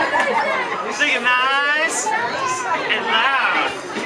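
Overlapping chatter of children and adults at a party, with a child's high-pitched voice calling out a little over a second in.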